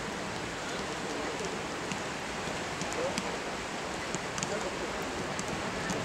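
Steady rain falling, an even hiss throughout, with faint distant voices and a few sharp clicks.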